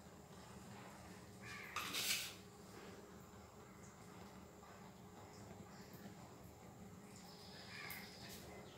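Quiet room tone with a faint steady low hum, broken by one short hissing noise about two seconds in.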